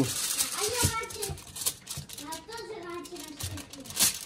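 Soft, indistinct speech in a small room, a child's voice among it, in two short stretches, with light rustles and taps of aluminium foil being handled.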